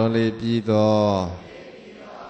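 Burmese Buddhist monk chanting verses in a low male voice, amplified through a handheld microphone: a few short syllables, then one long held note.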